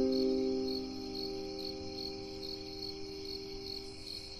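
Crickets chirping in a steady, even pulse, over a soft piano chord that rings on and slowly fades.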